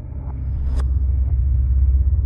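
Dark ambient background music: a deep, steady rumbling drone with a sharp, high ping that recurs about every two seconds, one sounding just under a second in.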